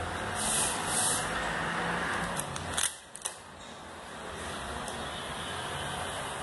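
Vinyl decal being rubbed down onto a motorcycle fuel tank with fingers and a felt squeegee: two short hissy rubbing strokes about half a second and a second in, and a few light clicks near the middle, over steady background noise and a low hum.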